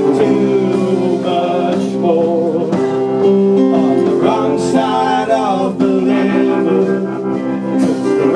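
A live garage rock band playing: electric guitars holding steady chords, with a wavering melodic lead line above them.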